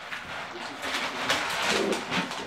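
Puppies making short, low whining and grunting sounds, with the puppies rustling through pellet litter.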